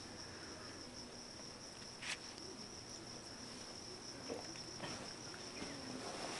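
Faint steady high-pitched insect trill, with a single short click about two seconds in.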